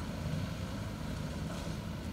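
A steady low rumble of outdoor background noise.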